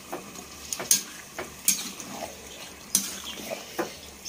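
A metal spatula stirring chicken pieces in a large aluminium cooking pot. It scrapes and clinks against the pot at irregular moments, about half a dozen times.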